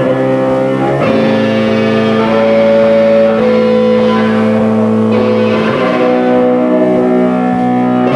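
A band playing live and loud: electric guitar and bass holding chords that change about a second in and again near the end, with drums underneath.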